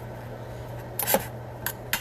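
A metal spoon clicking against a dish as quinoa is spooned in: a couple of quick clicks about a second in and two more single clicks near the end, over a low steady hum.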